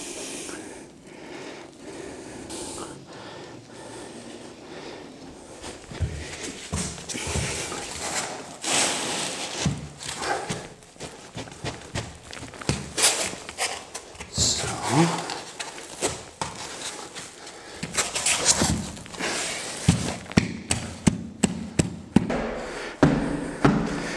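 Scraping, rubbing and knocks of gypsum-fibre dry-screed floor boards being handled and pushed together on the floor, with a run of footsteps across the boards near the end.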